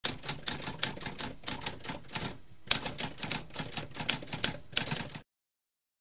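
Typewriter sound effect: a rapid run of key clacks with a brief pause about two and a half seconds in, stopping abruptly just after five seconds.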